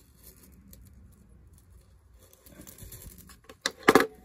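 Quiet handling of a metal jewelry pendant and chain-nose pliers, a soft rustle of metal and fingers. A few sharp clicks come close together near the end, the loudest sound here, as the metal pieces knock together.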